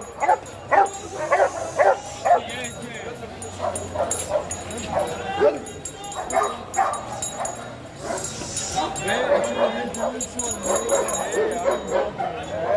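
Golden retriever barking over and over, jumping up at its handler on a leash. A quick run of sharp barks comes in the first two seconds, then yips and whines.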